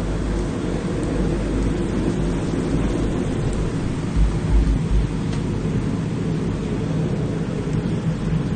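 Steady low rumbling background noise, with a few deeper thumps about four to five seconds in.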